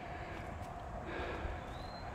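Quiet outdoor background: a steady low rumble and hiss, with a soft hiss coming in about a second in and a short, faint, slightly rising high note near the end.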